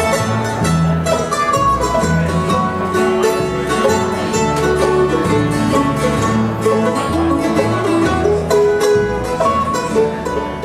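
Live bluegrass band playing an instrumental break: a picked banjo over strummed acoustic guitar and a plucked upright bass.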